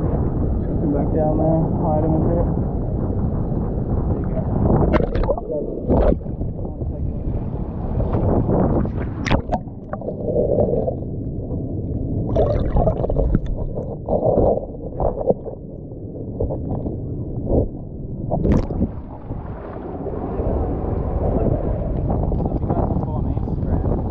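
Muffled water sloshing and rumbling, with the camera at the surface and under the water of a shallow rock pool. A few sharp clicks, like pebbles knocking, come through it.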